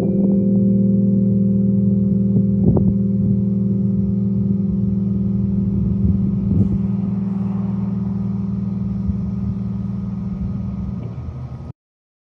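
Final chord of a 1975 Rhodes Stage electric piano, played through a combo amplifier and held on the sustain pedal, ringing and slowly fading. It cuts off suddenly near the end.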